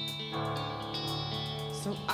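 Indie rock band playing live between vocal lines: electric guitar chords ringing over bass guitar and drums, changing chord about a third of a second in.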